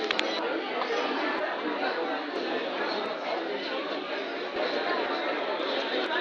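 Hubbub of many diners and staff talking at once in a restaurant and bar, with no single voice standing out, and a few sharp clinks.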